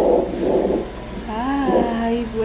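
Fetal heart monitor's Doppler transducer giving whooshing heartbeat pulses in the first second, then a woman's drawn-out vocal sound with a wavering pitch from about a second and a half in.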